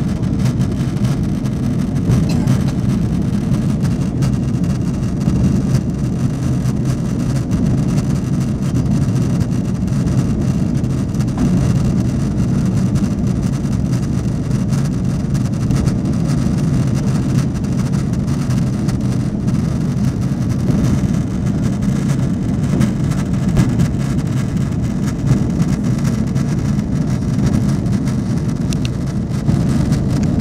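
Airliner cabin noise in flight: the jet engines and the rush of air past the fuselage, heard from inside the passenger cabin as a steady, even low drone.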